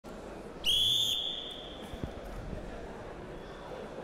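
Referee's whistle: one short, steady, high-pitched blast about half a second in, signalling the start of the bout, with an echo trailing off in the hall.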